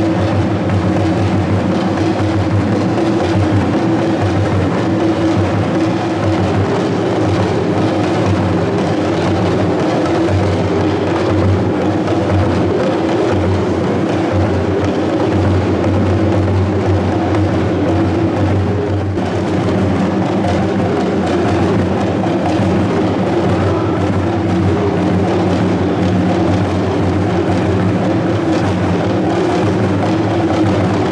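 A traditional ensemble of strap-slung barrel drums played with curved sticks, beating continuously and steadily.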